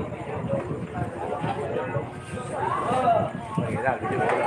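People talking around the pool table, several voices overlapping in casual chatter.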